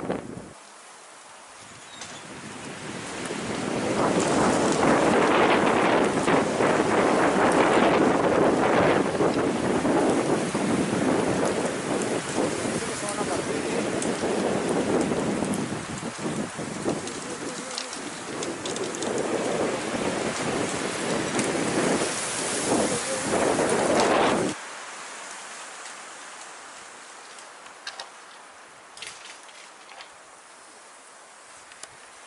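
Strong wind gusting, a loud rushing noise that builds over the first few seconds, surges and eases, then cuts off abruptly about three-quarters of the way through, leaving only a faint hiss.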